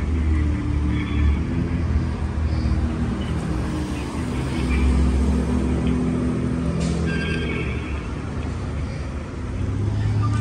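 Street traffic: car engines running and passing through an intersection, a steady low rumble. A brief higher tone sounds about seven seconds in.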